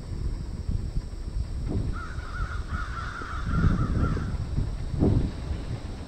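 Wind buffeting the microphone in irregular gusts, with a bird calling in a wavering, warbling run for about two seconds in the middle.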